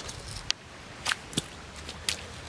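Footsteps on a wet, sawdust-covered pond shoreline: a few short, sharp clicks over a low steady hiss.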